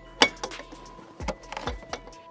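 Metal exhaust downpipe being worked up into place by hand against the turbocharger outlet: a few sharp metal knocks and clanks, the loudest just after the start, with more in the second half.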